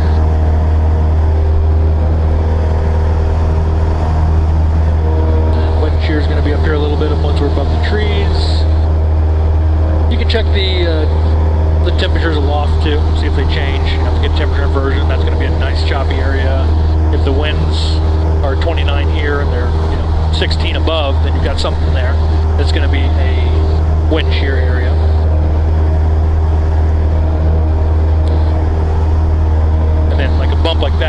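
Cessna 172's piston engine and propeller droning steadily at climb power, heard inside the cockpit just after takeoff.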